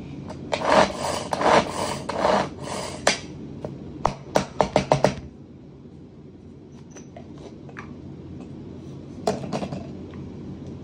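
Hand-operated plastic onion chopper being worked with diced onion inside: about two and a half seconds of rattling chopping, then a quick run of about six plastic clicks. A few more clicks come near the end as the lid comes off.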